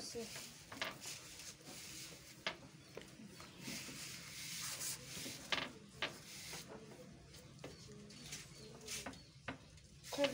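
Rolling pin pressed and rolled over donut dough on a floured board: soft rubbing and scraping, with a few sharp knocks.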